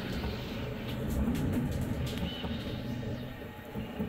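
Voron 2.4 3D printer running mid-print: a steady whir of fans and motion, with faint stepper-motor tones that shift in pitch as the print head moves.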